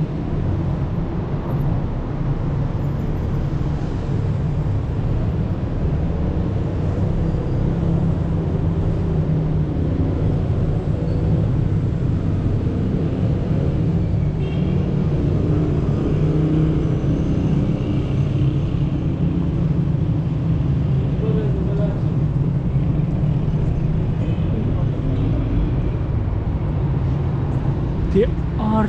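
Steady city street traffic noise: a continuous low rumble of cars going by on a busy road.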